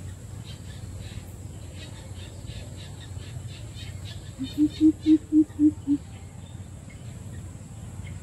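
A coucal calling: a run of about seven deep, evenly spaced hoots lasting about a second and a half, just past the middle.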